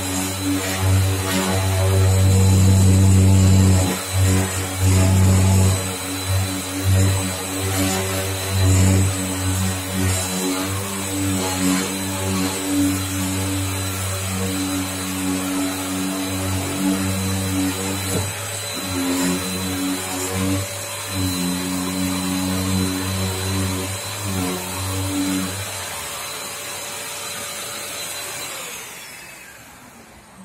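Yokiji KS-01-150-50 electric random orbital sander running against a car body panel, a low machine hum that swells and fades as the pad is pressed and moved across the panel. It stops a few seconds before the end.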